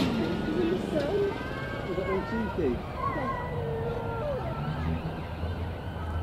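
Indistinct chatter of several people's voices with no clear words, and a low steady hum that comes in near the end.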